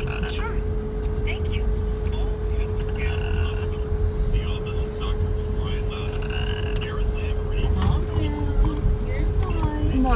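Car cabin sound of a car rolling slowly: a steady low engine and road rumble with a thin steady hum over it, and faint snatches of voices.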